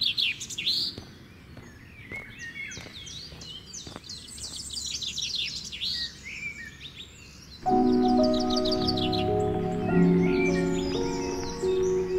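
Birds chirping and singing, many quick high chirps. About seven and a half seconds in, music with held chords comes in and is the loudest part to the end.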